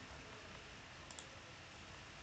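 Faint room tone with a quick double click of a computer mouse about a second in.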